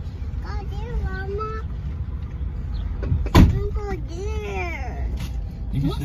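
High-pitched voice speaking in short bending phrases over a low, steady car-cabin rumble, with a single sharp thump about three and a half seconds in.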